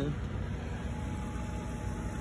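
Live-bait tank's Venturi pump running, its spray head spraying water onto the surface of the tank water in a steady hiss and rumble.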